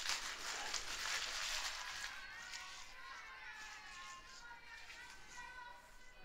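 Faint, distant girls' voices calling out on the softball field, over a hiss of noise that fades over the first two seconds.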